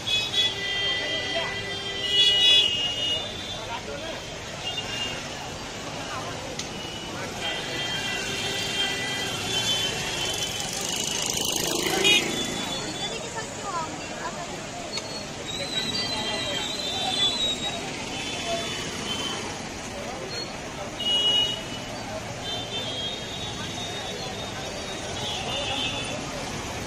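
Busy roadside sound of indistinct crowd voices and traffic. Short, high-pitched vehicle horn toots repeat on and off throughout.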